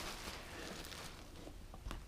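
Faint rustling of plastic packaging wrap being handled, fading away, with one light tap near the end.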